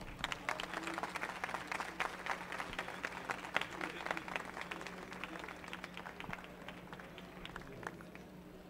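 Audience applauding, fairly faint, the clapping thinning out and dying away shortly before the end.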